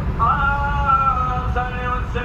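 Male voice chanting long held, slightly bending notes in the style of madih devotional praise singing, over the steady low road and engine rumble of a moving car's cabin. One long note is held through most of the first second and a half, and a new one begins near the end.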